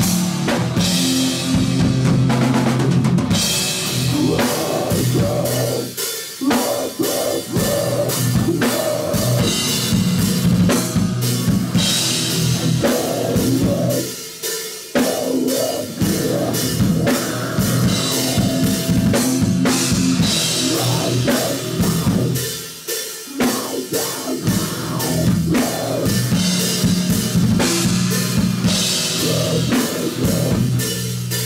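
A live death metal band playing: distorted guitars and bass over fast, dense drumming with bass drum, snare and cymbals. The riff breaks off briefly a few times, about every eight seconds.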